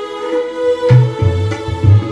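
Instrumental keyboard and tabla music: a Yamaha electronic keyboard holds a sustained melody, and about a second in the tabla come in with a sharp stroke followed by deep bass strokes on the larger drum.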